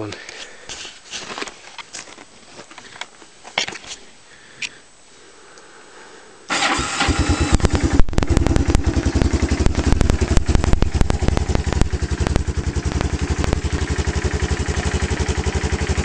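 A few quiet clicks and handling knocks, then about six and a half seconds in the 1986 Kawasaki Bayou KLF-300's single-cylinder four-stroke engine starts on its electric starter and runs at a steady idle with a fast, even beat.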